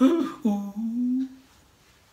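A man's voice: a brief vocal sound, then a drawn-out hummed note that rises slightly in pitch and ends about one and a half seconds in.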